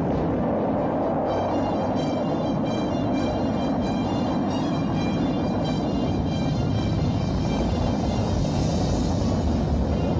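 Saturn V rocket launch: a dense, steady rumble of the engines at liftoff that starts abruptly just before and carries on, with music playing over it.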